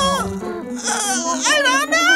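A cartoon character's voice whimpering in a wavering, crying tone over background music, with a brief hiss about a second in.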